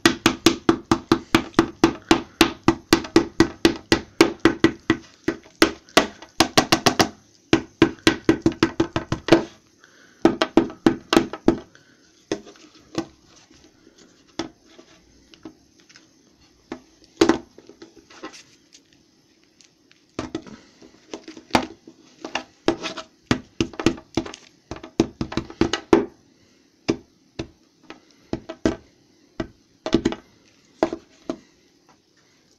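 An old flip phone smashed repeatedly onto a cookie on a wooden table, a run of sharp knocks of the phone against cookie and wood. The knocks come fast, several a second, for the first nine seconds or so, stop for a few seconds, then return in irregular clusters and thin out near the end.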